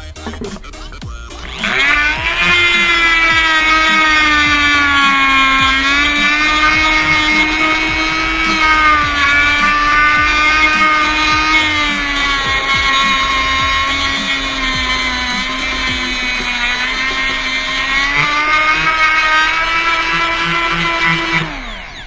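Elektropribor GE-170-VG rotary engraver switched on about a second and a half in, running at high speed with a steady whine while its abrasive stone grinds into an MDF strip. The pitch dips now and then, and near the end the tool is switched off and winds down.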